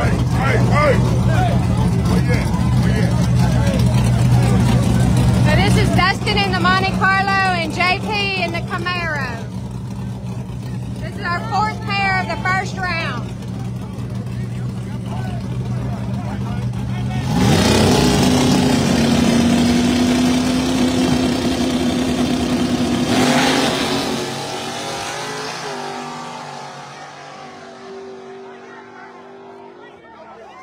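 Two street-race cars, a Monte Carlo and a Camaro, idling at the line with a steady low engine note while people shout twice. About seventeen seconds in, both launch at full throttle with a sudden loud burst, and the engine note climbs for several seconds as the cars pull hard away. The sound then fades as they go off down the road.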